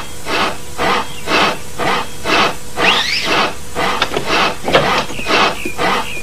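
Hand saw cutting through a wooden plank, rasping back and forth in even strokes about twice a second. A brief rising tone sounds about halfway through.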